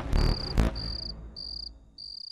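Crickets chirping in short, regularly spaced trills, about one every 0.6 seconds. Over the first second, the last two drum hits of a dramatic music sting die away under them.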